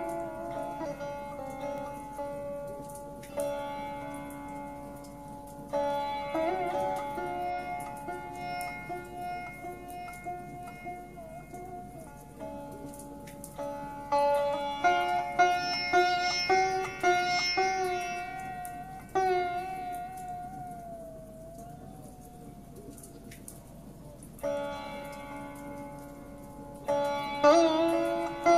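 Sitar music: plucked notes over a steady drone, with a run of quick plucks past the middle, then one long note that slides in pitch as it fades before new plucks near the end.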